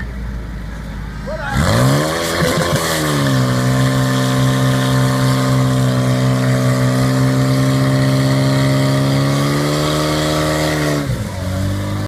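Portable fire pump engine idling, then revved sharply up to full throttle about a second and a half in and held at high, steady revs, easing off near the end: the pump driving water through the attack hoses to the jets.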